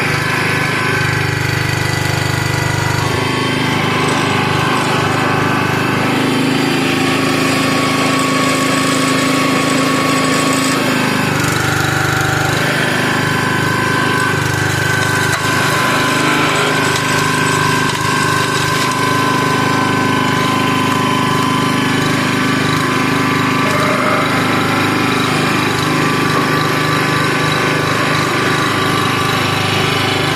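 Small gas engine on a towed hydraulic log splitter running steadily throughout, its note shifting a few times as the splitter is worked through a round of firewood.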